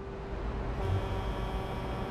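Steady low rumble and hiss of city and river traffic ambience, with a faint held note lingering from the guitar music that precedes it.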